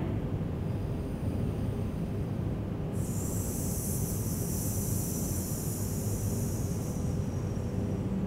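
A woman's long, sustained 'sss' hiss on the exhale, starting about three seconds in and lasting about four seconds: a singer's breathing exercise, a relaxed S with no glottal attack. A steady low hum of room noise runs under it.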